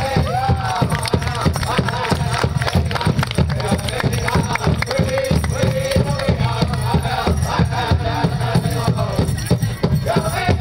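Powwow drum and singers: a big drum struck in a steady beat, with high, wavering chanted vocals over it, a song for a hoop dance.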